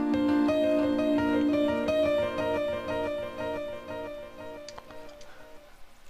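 Hip-hop piano sample played back with an echo effect applied: the piano notes repeat in echoes that fade away over the last couple of seconds.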